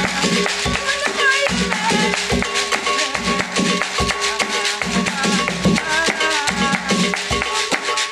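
Bamoun folk music: a dense, steady beat of shaken rattles over drum strokes, with a wavering melody line above.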